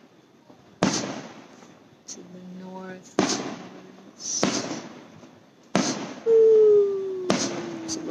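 Aerial fireworks shells bursting: four sharp booms roughly two to three seconds apart, each trailing off in a rumbling echo, with smaller pops between them. Near the end a loud, long tone slides slowly downward in pitch.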